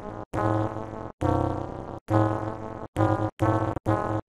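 Digitally distorted logo jingle audio: a low, pitched tone chopped into repeated bursts with silent gaps between them, three longer ones and then shorter, quicker stutters near the end.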